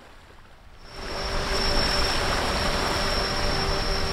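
Seaside ambience of waves and wind on a shingle beach, mixed with the steady whine of a hovering camera drone. It starts suddenly about a second in.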